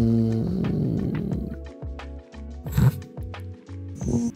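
A man's voice imitating waves crashing: a rough, breathy rush that starts about half a second in and fades away, loud at first and then quieter. Background music with a light ticking beat runs under it.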